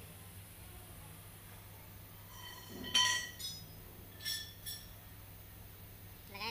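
Small metal parts clinking: one sharp clink that rings briefly about halfway in, a lighter one just after it, and two more light clinks about a second later.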